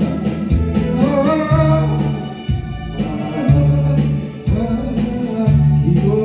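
A man singing a Korean ballad into a handheld microphone over a karaoke backing track, with a steady bass line and drums.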